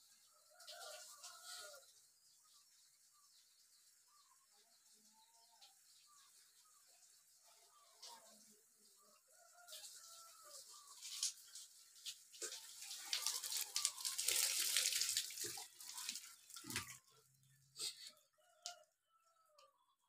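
Water poured from a plastic watering can held overhead, splashing and running down, loudest in the middle of the stretch with a few clatters of the can. Small birds chirp faintly throughout, most clearly near the start.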